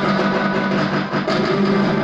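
Karaoke backing track playing an instrumental passage with no singing, a plucked string instrument such as a guitar to the fore.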